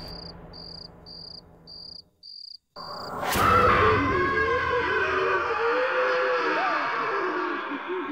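Horror score and sound design: a steady high chirping of night insects, about two chirps a second, dies away into a brief silence. A little after three seconds a sudden loud sting opens into eerie music with wavering, sliding tones.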